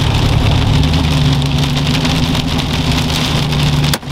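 Pickup truck driving, heard from inside the cab: a steady low engine hum under an even hiss of tyres and road noise.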